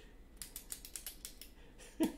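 A run of faint, quick clicks starting about half a second in, roughly eight a second.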